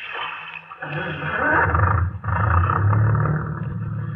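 Radio-drama sound effect of a boat's engine starting up about a second in and then running steadily with a deep, rough roar.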